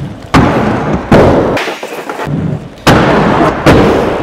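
Aggressive inline skates on plastic Ground Control Featherlite 4 frames hitting a skatepark ledge, grinding along it and landing: four loud hits, each followed by a short scraping, rolling sound.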